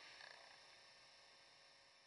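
Near silence: steady room hiss, with one faint, brief rustle about a quarter second in.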